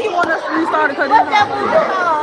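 Children's voices talking and chattering, several at once, with no clear words.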